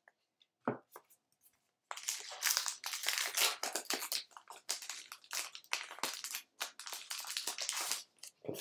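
A trading card pack's wrapper being torn open and crinkled by hand: after a near-silent start with one short rustle, a dense run of tearing and crinkling begins about two seconds in.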